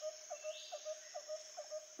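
Night ambience: a steady high cricket trill, with a lower short chirp repeated about four times a second.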